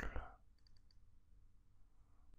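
A few faint computer mouse clicks less than a second in, against very quiet room tone, as a man's speech trails off.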